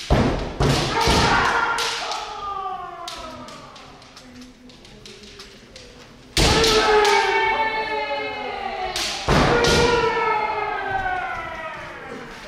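Kendoka shouting kiai: long drawn-out cries that start sharply and slide down in pitch. There are four, two in quick succession at the start, one about six seconds in and another about three seconds later.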